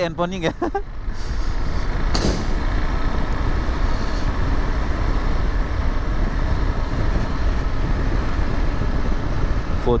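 Motorcycle riding at highway speed: wind rushing over the camera microphone as a steady deep rumble, with the engine running underneath. A brief louder rush comes about two seconds in.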